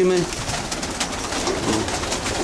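Many homing pigeons cooing together, with scattered short clicks and scuffles among them.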